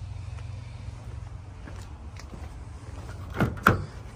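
Low steady outdoor rumble, then near the end two quick sharp clacks as the driver's door handle of a 2023 Toyota Hilux is pulled while the door is still locked.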